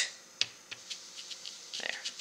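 Blending brush tapped on an ink pad and on cardstock: a string of light, irregular taps, the sharpest right at the start.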